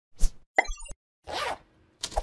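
Logo intro sound effects: a sudden thump, then a quick run of clicks with a few high tones, then a short whoosh.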